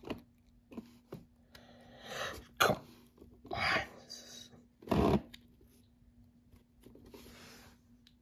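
Hands handling a hard plastic toy track piece while pressing a sticker onto it: scattered rustles and light plastic knocks in short, irregular bursts, the loudest a thump about five seconds in. A faint steady hum lies underneath.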